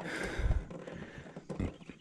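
Handling noise close to the microphone as a large peacock bass is held up against the camera: rustling, with a dull low bump about half a second in and another near the end.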